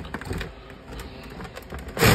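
Scratchy rustling and small irregular clicks as a resin hide is handled and shifted on a sandy terrarium floor.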